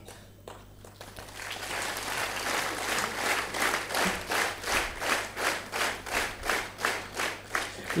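Audience applauding in an auditorium: clapping builds from about a second in and settles into an even rhythm of about four claps a second.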